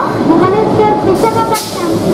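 Twin ALCO WDM diesel-electric locomotives running under power as they pull the train out, their engines thumping.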